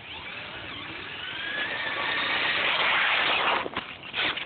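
Traxxas Stampede VXL RC truck's brushless electric motor whining as the truck speeds toward the camera, the whine rising in pitch and growing louder. It is loudest about three seconds in, then breaks up abruptly near the end as the truck passes.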